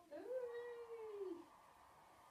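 Cat meowing: one long drawn-out meow that rises at the start, holds, and falls away at the end.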